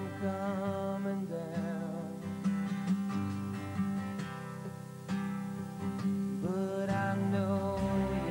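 Band playing a slow song live, with strummed acoustic guitar, bass and drums under a male lead vocal held in long, wavering notes.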